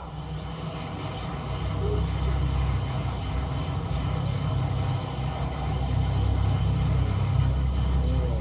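Deep, steady rumble that slowly builds in loudness: an anime power-up sound effect from a transformation scene, played through a screen's speakers.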